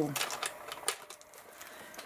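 Small paper pieces being handled and pressed onto a journal page by hand: a run of light, irregular taps and rustles.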